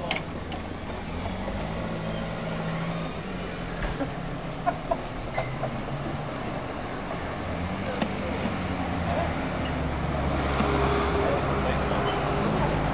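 Town street ambience: a steady low hum of cars on the road beside the pavement, with indistinct voices, and a few sharp clicks in the middle. The traffic noise grows louder near the end.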